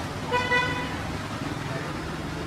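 A vehicle horn sounds one short, steady note lasting about half a second, over a steady hum of street traffic.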